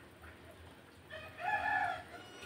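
A rooster crowing once in the background, starting about a second in.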